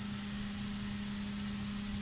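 A steady mechanical hum on one unchanging low pitch, over faint background noise.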